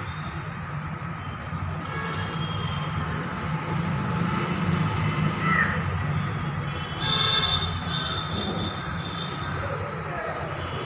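Outdoor ambience: a steady low rumble like distant traffic, with a few short high chirps and calls over it. The loudest call comes about seven seconds in.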